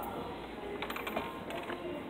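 A quick run of light clicks and taps about a second in, with a couple more near the end, over the steady background of a busy room.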